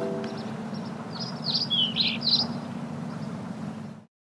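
Bird chirping: five or six quick, high, downward-sweeping chirps about a second in, over a low steady hum left from the music's tail. Everything cuts off suddenly at the end.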